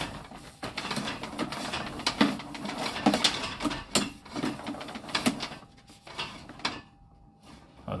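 Sewer inspection camera's push cable being pulled back through the line and reeled in, making irregular clicks, knocks and rubbing that die down about six seconds in.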